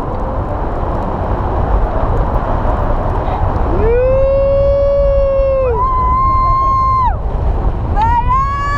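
Steady wind rushing over the wing-mounted camera's microphone during hang glider flight. About four seconds in, a rider lets out a long held yell that jumps higher in pitch near the six-second mark and lasts about three and a half seconds.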